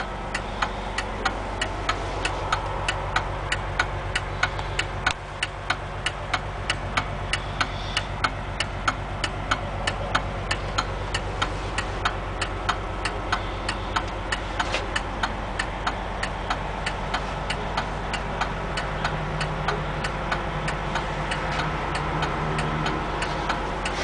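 Coach's Detroit Diesel Series 60 engine idling with a steady low drone, heard from the driver's area. A regular sharp ticking, about three ticks a second, runs over the drone.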